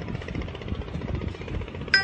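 A low, steady rumble with a fast pulsing texture, of a mechanical kind like a nearby engine running.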